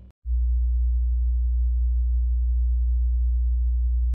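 A steady, deep electronic bass tone, a plain sine-like hum, starting right after a brief moment of silence and holding level without change.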